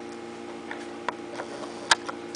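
A few light, irregular clicks from an Xbox controller being handled and its buttons pressed, the loudest just before the end, over a steady hum.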